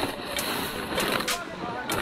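Woven plastic sack crinkling as it is pulled out of packed sand, a few sharp crackles over steady wind noise.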